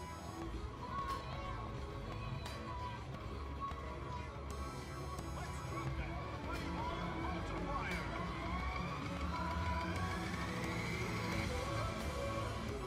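Slot machine electronic tones and jingles over casino floor din of background chatter and a low hum, with rising electronic sweeps from about seven seconds in.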